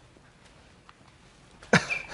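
Faint room tone, then near the end a short, sudden breathy burst from a man's voice, like the start of a laugh or a cough, just before speech.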